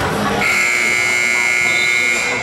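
A gymnasium scoreboard buzzer sounding one long, steady electronic tone. It starts about half a second in, over crowd voices.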